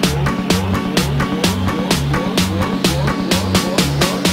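Minimal techno track playing: a steady dance beat with pulsing bass notes and crisp, evenly spaced hi-hat ticks over short sliding synth notes.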